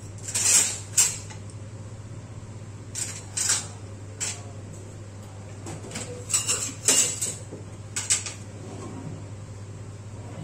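Butter melting in a hot non-stick pan, crackling and spitting in short, irregular bursts, with a steady low hum beneath.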